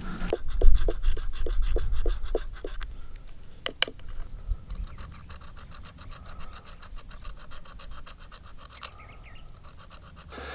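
A stone projectile point scratching a groove around an argillite effigy where the head meets the body. Evenly spaced scraping strokes, about four a second, for the first few seconds, then fainter, quicker strokes.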